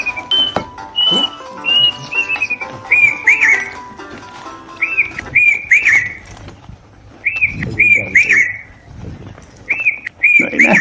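A cuckoo calling in loud, clear whistles. First comes a run of short, even notes, then from about three seconds in three phrases of quick notes that rise and fall.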